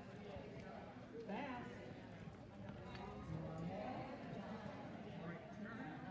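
Footsteps of a handler and a heeling dog moving across a rubber-matted floor, over faint, indistinct voices in a large hall.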